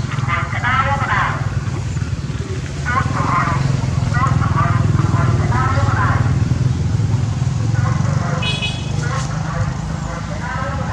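People talking over a steady low motor-vehicle engine rumble, with a short high-pitched sound about eight and a half seconds in.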